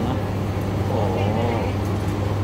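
A steady low hum runs under a man's brief spoken 'oh'.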